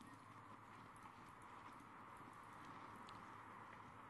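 Faint hoofbeats of racehorses easing down after the finish, over a low steady hiss.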